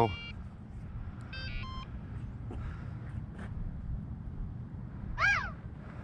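Short electronic beeps from the RC bike's electronics during setup: a brief beep at the start and a couple of beeps about a second and a half in, over a low steady rumble. Near the end comes a single short chirp that rises and falls in pitch.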